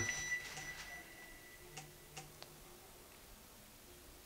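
Quiet room with a faint, thin high tone that fades out within the first second, then three faint ticks about two seconds in, from a Nokia N97 smartphone being handled in the hands while it boots.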